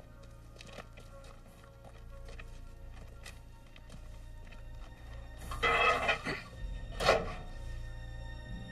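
Film soundtrack music with a steady low drone and faint scattered clicks, broken by two loud, sudden bursts of noise about five and a half and seven seconds in.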